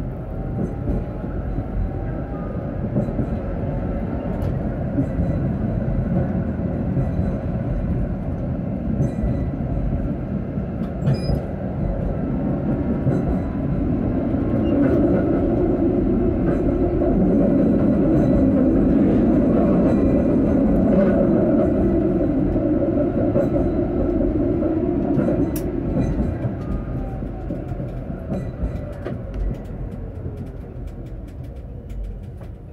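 Tram running along street track: steady wheel-on-rail rumble and motor noise, loudest in the middle, with a faint rising whine at the start and a falling whine near the end.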